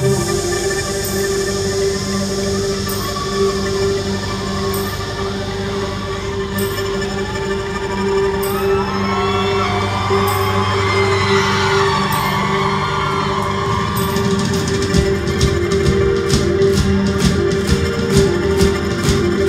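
Live band playing an instrumental passage: a held keyboard drone over sustained bass notes, with a light cymbal tick about every two seconds. About fourteen seconds in, a faster high percussion pattern comes in.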